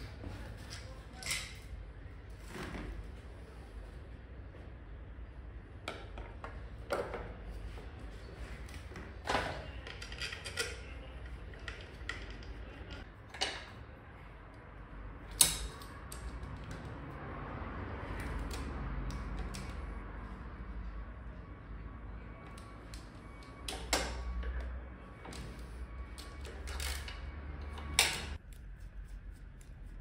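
Scattered metal clicks and knocks as the rocker (valve) cover is fitted onto a Honda PCX 125 cylinder head and worked on with a hand tool, over a low steady hum.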